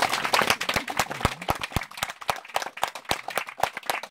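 Small audience applauding, with one person clapping loudly close to the microphone at about four claps a second over the general patter.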